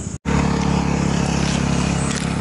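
A car engine idling steadily through its stock exhaust, refitted in place of a louder aftermarket one. The sound drops out for an instant just after the start, then the steady idle carries on.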